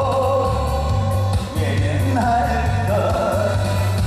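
A man singing a song live into a handheld microphone over backing music with a steady, repeating bass line; his held notes bend in pitch, with a short break between phrases about a second and a half in.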